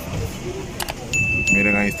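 A click, then a high, bell-like ding that starts about halfway in and rings on steadily: the sound effect of a subscribe-button and notification-bell animation. It plays over the background chatter of a crowded shop.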